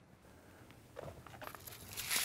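Near silence, then faint scattered clicks and crunching handling noises starting about a second in.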